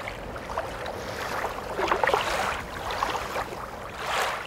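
Ambient sound of water and wind, an even rushing noise that swells and eases in irregular surges.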